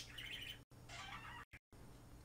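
Faint high-pitched chirping in two short stretches, over a low steady hum.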